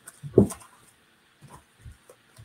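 A cotton t-shirt being handled and turned inside out on a tabletop, with one short loud sound about half a second in and a couple of faint soft knocks near the end.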